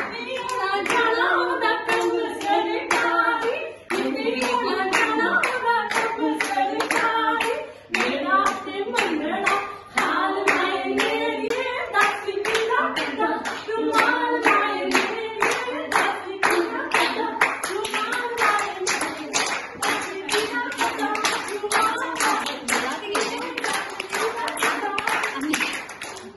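Women singing Punjabi boliyan for gidda, with hand-clapping keeping a steady beat of about two to three claps a second. The singing comes in short verses with brief breaks, while the clapping runs on throughout.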